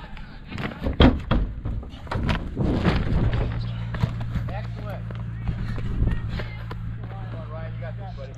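Race-course sound: a few sharp thumps and knocks in the first three seconds, then distant voices calling, over a steady low hum that starts about three seconds in.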